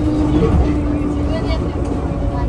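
Enoden electric train running on its track: a low rumble from the car with a steady hum, and a voice heard over it.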